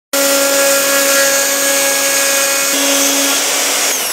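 Handheld plunge router running at full speed and cutting along a strip of wood: a loud, steady whine over a hum, with a slight change in its tone about two-thirds of the way through.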